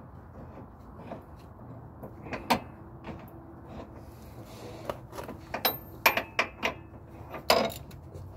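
Scattered sharp metallic clicks and clinks of hand tools and hardware being handled while a trailing-arm bolt is worked into place: one about two and a half seconds in, then a quick cluster in the last three seconds.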